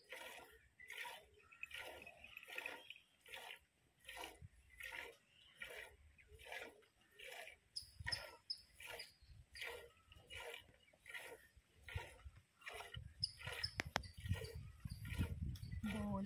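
Milk squirting in short hissing jets into a steel pot as a cow is milked by hand, an even stroke about every half second. A low rumble rises near the end.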